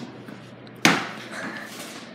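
A single sharp knock about a second in, fading out over about half a second.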